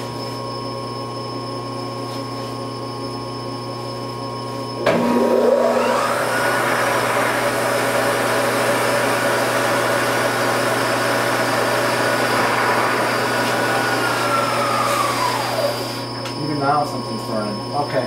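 Supermax YCM-16VS milling machine: a steady electrical hum, then about five seconds in the spindle starts and winds up to a steady high whine over a rough, noisy run. It holds for about nine seconds, then winds down. The mill has a spindle gearing or timing-belt fault that the owner can't pin down, and something in it is burning.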